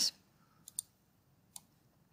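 Computer mouse clicks: two quick clicks just under a second in, then one more about a second later.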